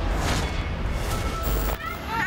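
Dramatic news-intro sound design over music: deep rumbling booms and whooshing noise. A wavering, voice-like cry begins just before the end.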